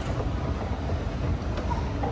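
Schindler 9300AE escalator running at 0.5 m/s, a steady low mechanical rumble of the moving steps and drive heard from on the steps.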